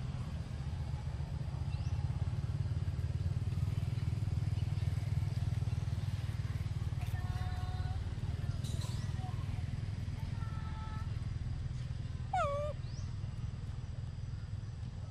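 Short pitched macaque calls: a few brief level calls, then a louder falling squeal near the end, over a steady low rumble.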